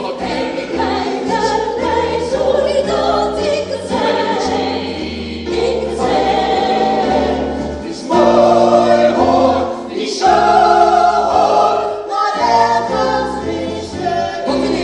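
Musical-theatre song: several voices singing together in sustained chords over an accompaniment with a low bass line, swelling louder about eight seconds in.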